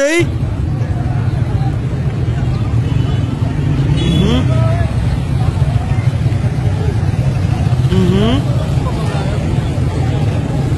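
Street noise: motorcycle engines running in a steady low rumble under crowd chatter, with two short calls from voices in the crowd, about four and eight seconds in.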